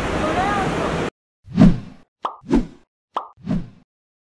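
Busy airport terminal hubbub with a voice, cut off abruptly about a second in. It is followed by cartoon-style pop sound effects: one pop, then twice a short click followed by a pop.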